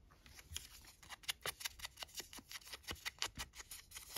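Small paper labels and a crafting tool being handled: a quick, irregular run of faint, crisp clicks and taps.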